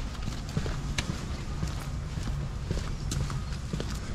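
Footsteps walking on hard paving: irregular taps about twice a second over a low steady hum.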